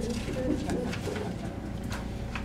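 Soft low voice murmuring, with a few light rustles and clicks of paper sheets being handled at a wooden lectern.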